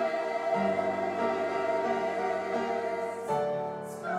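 Mixed-voice church choir singing in parts with piano accompaniment, holding sustained chords that change about half a second in and again just after three seconds, with a brief sung 's' near the end.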